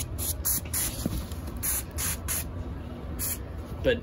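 Pressurized hand sprayer wand spraying liquid insecticide into a chair frame to treat bed bugs, in a series of short hissing bursts, several a second.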